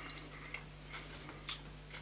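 Quiet room tone with a steady low hum and a few faint ticks, the clearest about halfway through.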